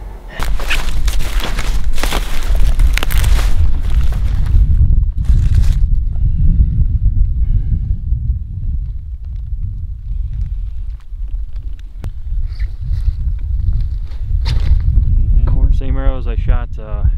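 Heavy low rumble of wind buffeting the microphone, with loud rustling noise over the first four to five seconds that then drops away, leaving the rumble.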